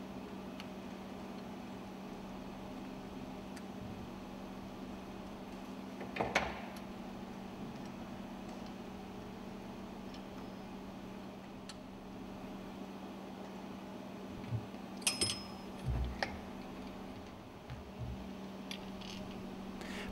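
Faint steady hum with a few small metallic clicks and clinks from pliers and linkage parts as a fuel pump's fuel index pointer is taken off. One click comes about six seconds in and a short run of them comes about three-quarters of the way through.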